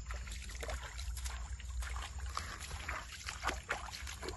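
Bare feet wading and splashing through a shallow, stony stream, in irregular sloshing steps over a steady low rumble.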